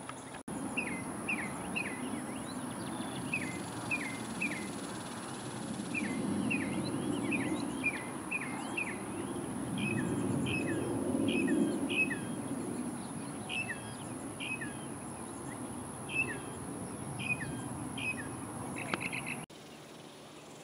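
A songbird singing a long series of short, down-slurred whistled notes, about two a second in runs, over a steady low outdoor background noise.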